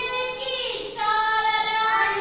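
Children singing an action song: a short sung phrase, then one long held note from about a second in.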